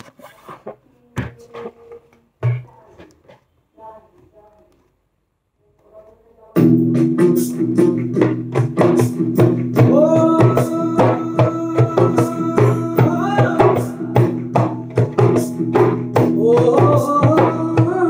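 A few light taps on a djembe, then about six and a half seconds in recorded music with a steady drone and a melody starts abruptly, and hand drumming on the djembe plays along with it in quick sharp strokes.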